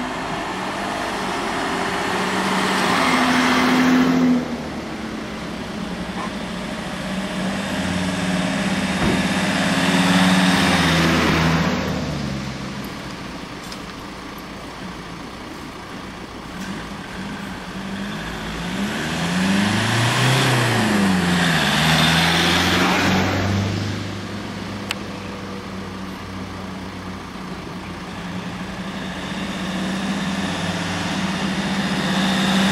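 Emergency vehicles, including Mercedes Sprinter ambulances and an emergency doctor's car, driving past one after another. Their engine and tyre noise swells and fades with three close pass-bys, and the engine pitch drops as one goes by. The next one is approaching near the end. No siren sounds.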